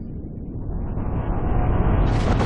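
A rumbling build-up sound effect, a dense low roar that swells steadily louder toward a burst.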